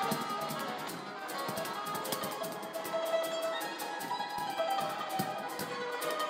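Yangqin, the Chinese hammered dulcimer, played in quick runs of hammered notes that ring on, with a cajon adding occasional deep thumps.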